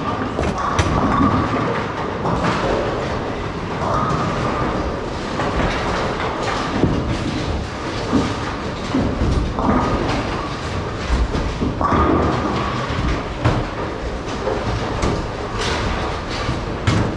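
Bowling balls rolling down the lanes with a steady low rumble, and sharp clatters of pins being hit, amid the din of a busy bowling centre.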